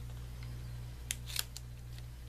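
Scissors snipping through a strip of double-sided foam tape: two short, quiet snips a little past one second in.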